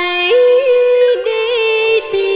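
A woman singing a Vietnamese bolero melody, holding long notes with small ornamental turns. The pitch steps up early on and drops back down about a second in.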